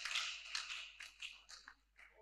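A few faint scattered handclaps, irregularly spaced and dying away within about two seconds.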